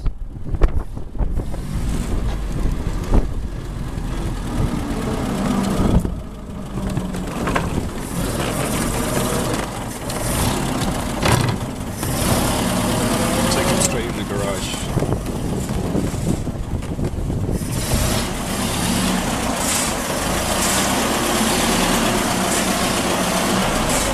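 1924 Bullnose Morris Cowley's four-cylinder side-valve engine running as the open car is driven slowly, its pitch rising and falling a few times.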